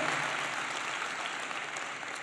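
Audience applauding, the applause slowly dying down.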